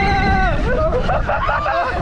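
A long, held cry from a rider ends about half a second in. Several excited voices then shriek and exclaim over a steady low rumble of rushing air and water on the slide.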